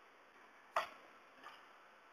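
Two computer keyboard keystrokes: a sharp click a little under a second in, then a much fainter one.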